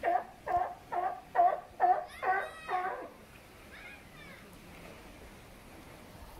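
Sea lion barking: a rapid run of seven loud barks, about two to three a second, over the first three seconds, then one fainter call about a second later.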